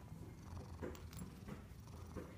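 Domestic cat purring softly as its head is stroked: a low, steady rumble, with a few faint brushing sounds from the hand on its fur.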